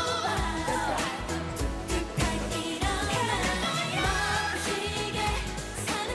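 K-pop song with a steady beat and a girl group singing live into handheld microphones.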